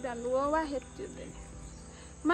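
Insects chirring steadily in the background, a high, even sound that does not change.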